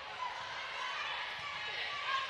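Steady crowd murmur echoing in a large indoor volleyball arena, fairly quiet, with no single loud event.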